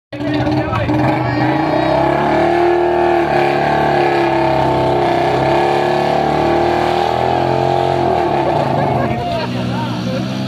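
Several single-cylinder motorcycle engines revving hard under load in a rope tug-of-war, a Royal Enfield Bullet 350 against two 100 cc commuter bikes. The revs hold steady and then fall away about eight seconds in.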